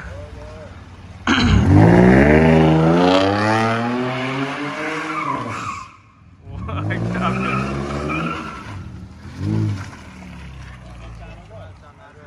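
Mercedes-Benz CLS engine revving hard while its tyres squeal and skid as the car slides in circles. Two long spells: one starting suddenly about a second in and easing off around the middle, a second shortly after, then a brief blip near the end.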